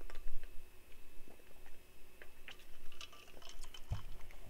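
A few faint scattered clicks and light knocks as someone drinks from a bottle and puts it down, over a low steady room hum.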